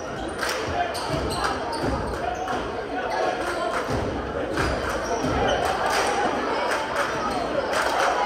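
Basketball bouncing in irregular thuds on a hardwood gym floor, over the steady chatter of spectators in a large, echoing gym.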